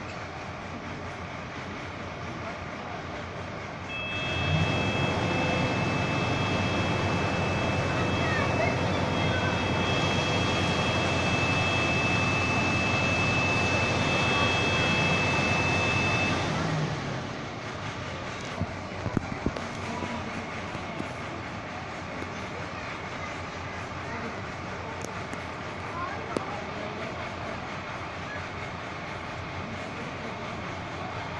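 Fire truck's aerial ladder engine and hydraulics running to work the platform: a steady drone with a high, even whine. It comes in abruptly about four seconds in and drops away about thirteen seconds later, leaving street background.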